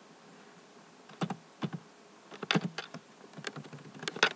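Typing on a computer keyboard: a handful of separate keystrokes at an uneven pace, with a quick run of them about two and a half seconds in.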